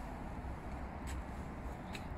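Quiet outdoor background noise: a steady low rumble with a faint hiss and no distinct event.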